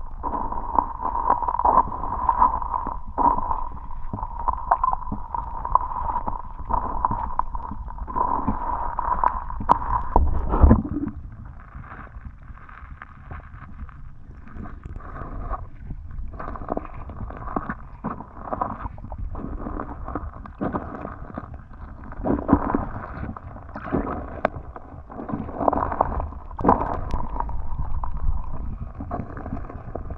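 Muffled rush and gurgle of river water around a submerged camera, with irregular knocks and bumps. Louder for about the first ten seconds, then quieter.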